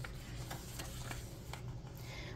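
A page of a paperback picture book being turned by hand: a faint paper rub with a few soft ticks, over a low steady hum.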